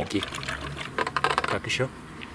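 Liquid poured from a glass bottle into a plastic plant sprayer's reservoir, gurgling, with a quick run of small clicks and glugs around the middle.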